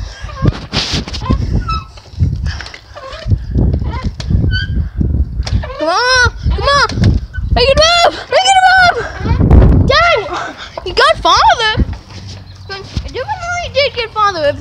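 Swing set squeaking as it is ridden back and forth: high, rising-and-falling squeaks in pairs about every two and a half seconds, with wind buffeting the microphone as it swings.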